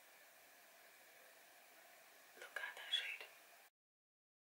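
Faint room hiss, then about two and a half seconds in a brief cluster of soft, breathy mouth sounds lasting under a second. The sound cuts off abruptly just before the end.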